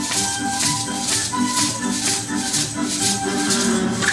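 Many maracas shaken together by a group in a steady, even rhythm, over recorded backing music that carries a melody.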